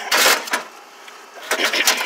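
Metal computer cases and parts scraping and clattering as a hand works a server blade loose from a packed pile of scrap computers: a scrape at the start, then a run of sharp knocks and clicks near the end.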